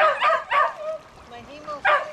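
Small dog yipping and whining in short, high calls: a quick run of them in the first second and another near the end, over the steady rush of a fast, high river.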